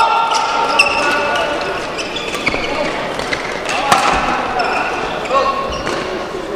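Court shoes squeaking on the indoor badminton court floor during a rally, with a few sharp clicks of rackets hitting the shuttlecock.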